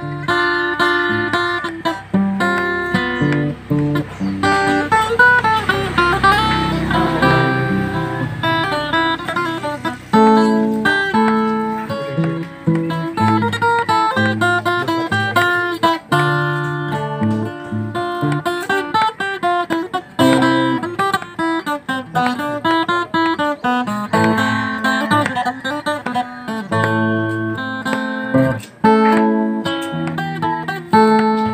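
Acoustic guitar played fingerstyle: an unbroken instrumental piece of plucked melody notes over bass notes, with some strummed chords.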